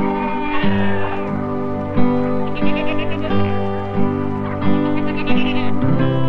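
Light background music over a steady stepping bass line, with goats bleating over it three times in wavering, quavering calls.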